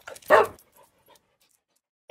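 A single short dog bark in an intro logo sting, about a third of a second in, with a couple of faint trailing blips after it.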